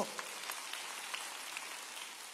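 Faint audience applause, an even patter of many hands that slowly dies away.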